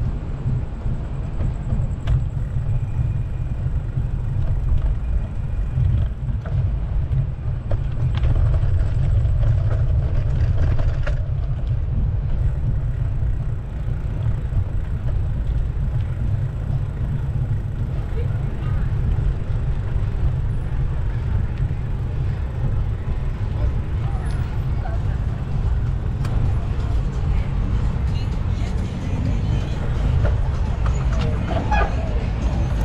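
Steady low rumble of wind buffeting the microphone of a camera on a moving bicycle, with faint traffic and street sounds underneath.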